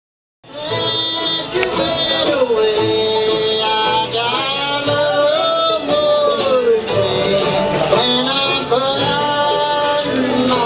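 Live bluegrass band playing, with acoustic guitars, banjo and upright bass under a man singing the lead; the music starts about half a second in.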